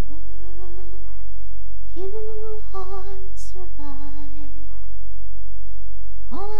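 A girl humming a slow wordless tune to herself: a few long held notes with vibrato, stepping up and then down in pitch, and a pause of more than a second near the end.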